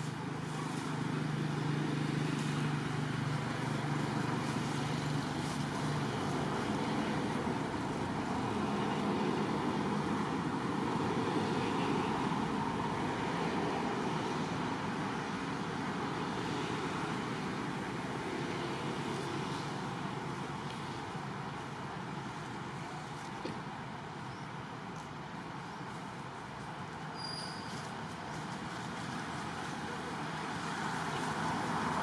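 Steady background rumble like distant road traffic, with a low engine-like hum strongest in the first several seconds.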